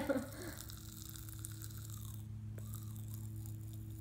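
Pop Rocks candy crackling and fizzing inside a mouth: a faint, continuous fine crackle that sounds like shaking up soda.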